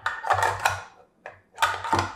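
Sharp metallic clicks and rattles from a steel Accuracy International AX rifle magazine handled against the rifle's magazine well and release: one cluster in the first second and another near the end.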